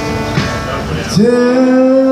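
Live worship song: strummed guitar, then about a second in a man's voice scoops up into a long held note over it.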